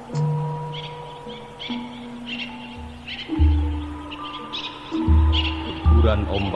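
Cirebon-style gamelan music: sustained ringing metal tones, with three deep gong-like strokes in the second half. Short high chirps like birdsong run over it throughout.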